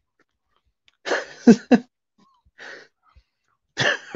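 A man coughing: a short cluster of two or three coughs about a second in, followed by a faint breath.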